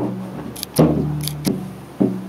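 Hand-held frame drum struck with a beater in a slow beat: three deep strikes that ring and fade, the last one weaker, with light sharp clicks between them.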